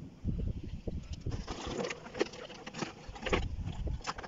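Wood fire crackling in a charcoal grill as it catches under a heap of scrap electrical cables, with scattered sharp crackles over a low, irregular rumble.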